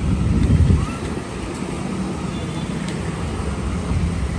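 Street traffic: a steady low rumble of passing road vehicles, swelling louder within the first second.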